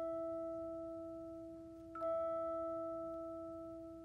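The start of a hymn's music: a single bell-like note rings with a long, slow fade and is struck again at the same pitch about halfway through.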